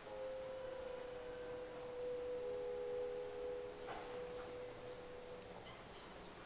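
Quiet sustained electronic tones from an educational video's soundtrack over room speakers: one held note, with a second, slightly lower note joining for about a second in the middle, stopping shortly before the end. A brief noise about four seconds in and a few faint clicks near the end.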